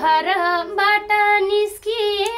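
A woman singing a line of a Nepali dohori folk song in a high voice, in short phrases with brief breaks between them.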